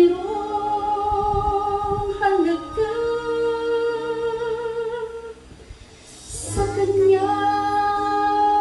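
A woman singing long, held notes into a handheld microphone, with a brief pause a little after five seconds in before she carries on.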